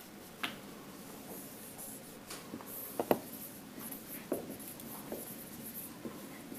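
Dry-erase marker writing on a whiteboard: a string of short scratchy strokes and ticks, with a sharper tap about three seconds in.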